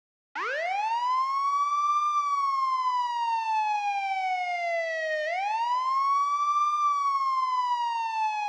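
Police siren wailing: two slow rise-and-fall sweeps in pitch, starting abruptly a moment in.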